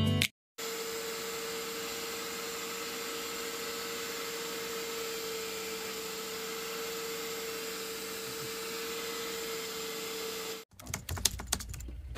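Portable spot cleaner running steadily, its suction motor giving an even hiss over a steady hum as the nozzle is worked over fake fur. It cuts off suddenly near the end, followed by a few knocks and clatter.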